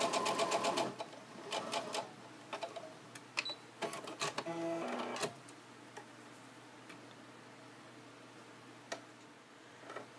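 Brother computerized sewing machine stitching rapidly while top-stitching a small shoe tab, stopping about a second in. A few scattered clicks and a brief whir follow a few seconds later.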